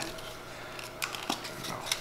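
Plastic clamshell packaging of Scentsy wax bars being handled, giving a few faint clicks and crinkles.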